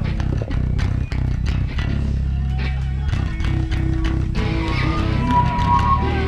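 A rock band playing live: electric guitars and bass sustained with drums beating steadily, about three hits a second. About four seconds in the sound grows fuller, with a higher line coming in over the band.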